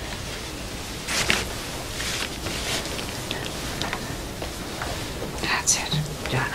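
A woman breathing heavily and unevenly in distress, with sharp breathy gasps about a second in, around two seconds in, and again near the end.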